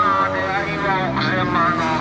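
Yamaha FZ1 Fazer's inline-four engine running at low revs, its note rising and falling as the bike is throttled through a tight, slow gymkhana turn.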